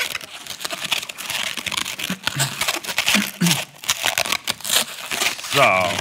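Hands twisting a long latex modelling balloon into a balloon dog: a dense, irregular run of short rubbery squeaks and rubs as the balloon is twisted and locked.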